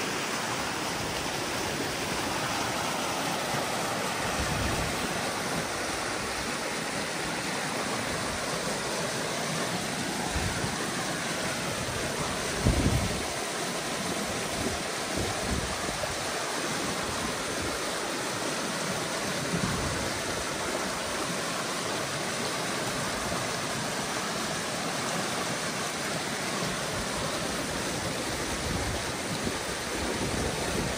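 Water rushing through a breached beaver dam: a steady churning rush of muddy water pouring through the gap into a ditch. A brief low thump about thirteen seconds in is the loudest moment.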